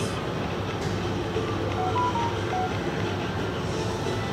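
Shop room noise: a steady low hum with a few faint, brief tones in the middle and no clear events.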